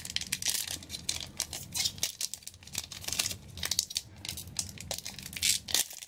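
Foil booster-pack wrapper crinkling as it is handled and torn open by hand, in an irregular run of sharp, high-pitched crackles with louder clusters about half a second in, around three seconds and near the end.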